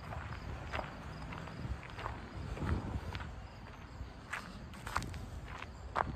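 Footsteps on pavement, an irregular soft tap or scuff every half second to second, over a low rumble of wind on the phone's microphone.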